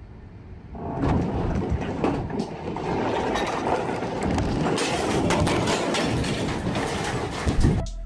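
Tsunami floodwater rushing past, heard as a steady rumbling noise that starts about a second in, with a few knocks in it.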